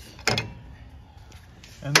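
A single sharp knock about a third of a second in, as the brake rotor with the double chuck clamped in its hat is handled on the bench, followed by low shop background.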